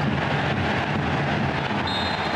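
Steady crowd noise from the stands of a football stadium during open play.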